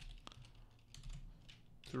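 Faint computer keyboard typing: a few scattered key presses.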